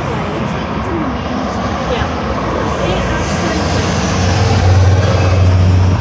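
Road traffic moving through a junction. From about halfway a heavy vehicle's low engine drone builds, loudest near the end.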